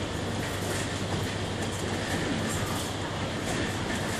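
Steady engine and road noise inside a moving bus, with the tyres running on a wet road.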